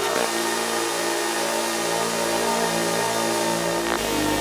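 House/techno DJ mix in a breakdown: sustained, droning synth chords with the drums dropped out, a single hit near the start and another right at the end as the beat comes back.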